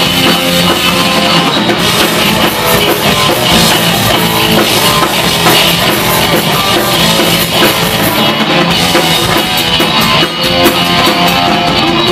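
Live rock band playing loud and steady: electric guitar, bass and drum kit in an instrumental stretch without singing.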